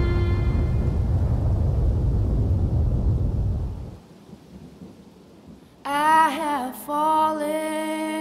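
Deep rumble of thunder with rain, fading out about four seconds in. After a short lull, a voice begins singing a slow song over a held low note near the end.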